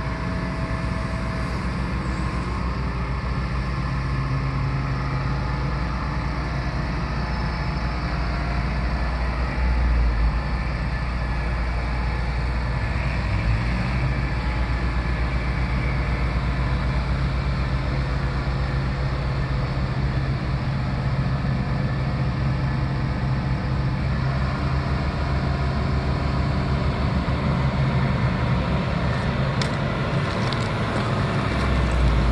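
Terex Fuchs MHL 340 material handler's diesel engine running steadily, its pitch rising a little about 13 seconds in and holding there.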